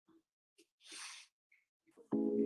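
Near silence, broken by one brief, faint puff of noise about a second in.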